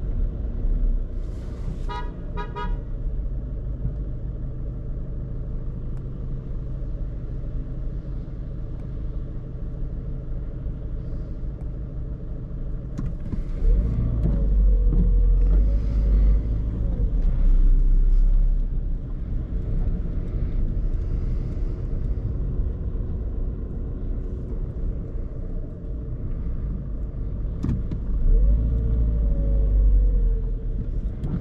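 Skoda Fabia II's 1.6-litre four-cylinder common-rail TDI diesel heard from inside the cabin, running at low speed in stop-and-go traffic. It pulls harder with the engine note rising and falling around the middle and again near the end. A short pitched beeping sounds about two seconds in.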